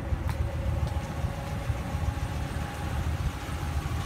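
Steady low background rumble with a faint hum, and one light click just after the start.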